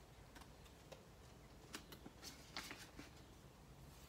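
Near silence with a few faint rustles and clicks, mostly in the middle, from plastic binder pockets and a laminated card being handled as a page is turned.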